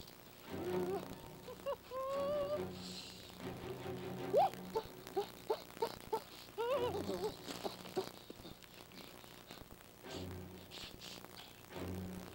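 Film soundtrack: short wordless vocal sounds, rising and falling whoops and hums, with gaps between them, over a steady low hum.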